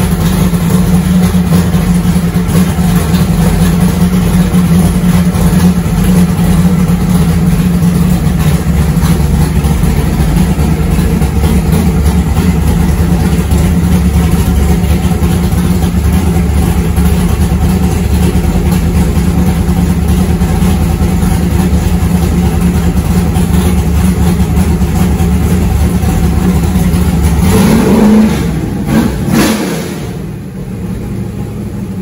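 A 427 Clevor V8 (Ford Windsor block with Cleveland heads), fuel-injected, running steadily and loud just after its first fire-up in four years. Near the end it revs up once, then drops back.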